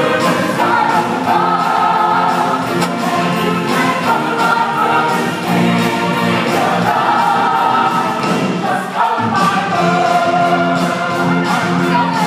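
Show choir singing in harmony over accompaniment with a steady beat, the chords held long; the music drops out briefly about nine seconds in, then comes back.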